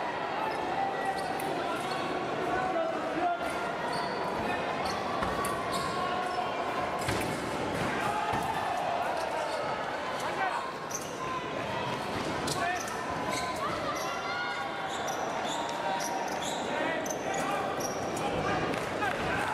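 Fencers' footwork on the piste: repeated short thuds and knocks of feet landing and stamping, over indistinct voices echoing in a large hall.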